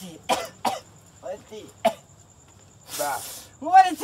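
A person coughing in a few short bursts and clearing the throat, then a breathy hiss about three seconds in, and a voice near the end.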